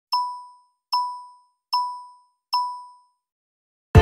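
Countdown sound effect: four short electronic dings about 0.8 seconds apart. Each is a bright tone that dies away within half a second. Music starts just before the end.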